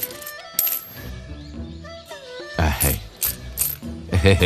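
Metal cash coins clinking in a small wicker basket as a hand gathers them up. There are a few sharp chinks right at the start, then a second cluster of chinks later on, over soft background music.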